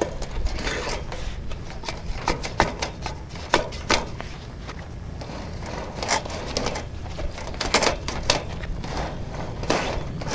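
Irregular clicks, knocks and scraping from a sewer inspection camera being worked back and forth in a drain line, over a steady low hum.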